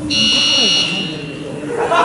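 Basketball scoreboard buzzer sounding once, a loud steady tone lasting about a second.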